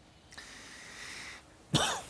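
A short, breathy noise from a person at the studio microphone, lasting about a second, without any voiced pitch. A voice begins near the end.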